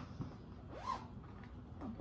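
A zipper on a fabric project bag being pulled open, faint, with light rustling from handling the bag.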